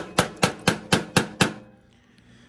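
A wooden stick rapping on a metal wood-stove pipe, about four knocks a second, each with a brief metallic ring, stopping about one and a half seconds in. The beating knocks caked creosote loose inside the pipe so it falls out in chunks.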